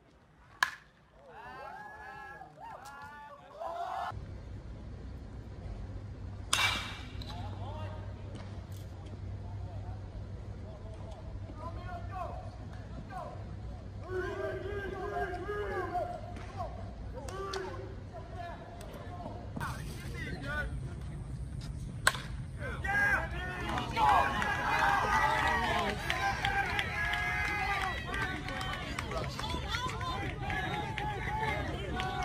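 Ballpark sound: scattered voices and chatter from spectators, broken by a few sharp cracks of a bat hitting the ball, about half a second in, around six seconds in, and about 22 seconds in.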